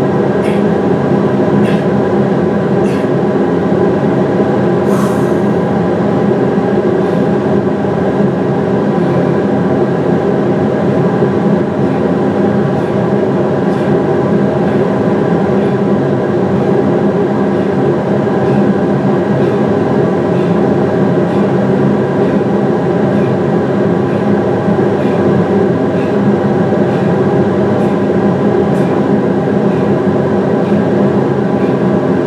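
Recording of two industrial fans played back as white noise: a loud, steady drone of running fans with a hum of several steady tones.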